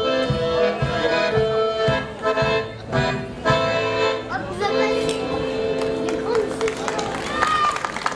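Accordion playing a folk dance tune over a steady low beat, then ending on one long held chord. Clapping starts near the end.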